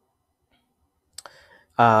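Near silence, then a single short click a little over a second in, followed by a man's voice starting with "uh" near the end.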